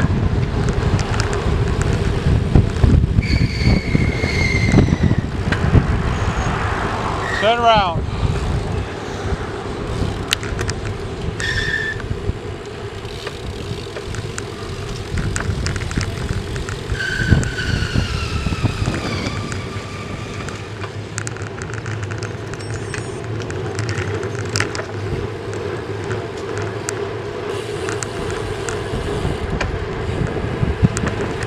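Wind rushing over a bicycle-mounted camera's microphone with road and tyre noise while riding at speed in a group of road bikes, with traffic going by. It is loudest in the first few seconds, and a few short high whistling tones come through, some falling in pitch.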